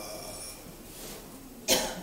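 A man's short cough into a handheld microphone near the end, after about a second and a half of quiet room tone.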